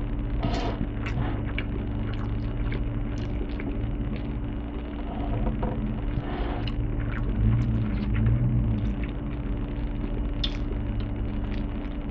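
A man chewing a mouthful of macaroni and cheese, with soft wet mouth sounds and small clicks, over a steady low hum.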